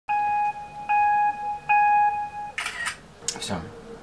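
Three identical electronic beeps about 0.8 s apart, each a steady tone, the third held a little longer. Brief noisy sounds follow near the end.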